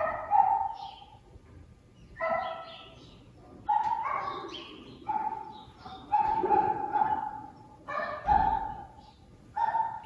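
A dog barking and yelping in a series of about seven drawn-out, pitched calls with short gaps between them.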